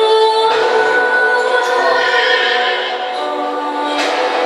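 Movie teaser soundtrack music, with singing voices holding long notes.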